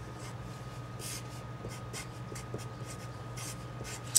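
Pen writing on paper: a run of short scratchy strokes starting about a second in, over a steady low hum.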